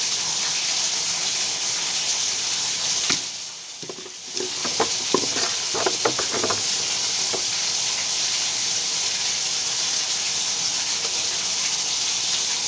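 Steady hiss of water running and draining from a dismantled stopcock, left open because the water supply cannot be shut off. The hiss drops away for about a second a few seconds in, then returns with a few light clicks and taps.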